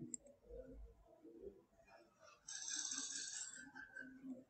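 Faint room tone, with a soft hiss lasting about a second in the second half.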